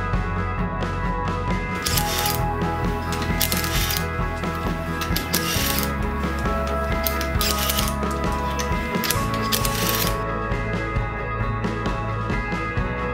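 Cordless impact wrench undoing wheel bolts in about seven short bursts, over background rock music.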